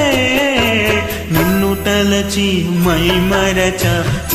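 Karaoke cover of a Telugu film song: a man's voice holds long, slightly wavering notes without words over the backing track.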